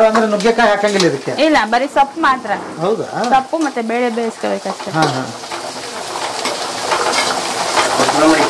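Sliced onions frying and sizzling in a steel kadai while a steel ladle stirs them, scraping and clicking against the pan. A voice sounds over it for about the first half, then only the frying and stirring remain.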